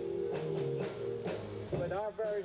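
Band music with guitar and bass holding sustained notes and a few strummed chords; a singing voice comes back in near the end.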